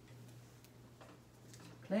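Felt whiteboard eraser wiping across the board in a few faint, short strokes.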